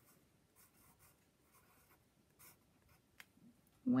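Pencil writing on lined paper, a word handwritten in a series of faint, short scratching strokes.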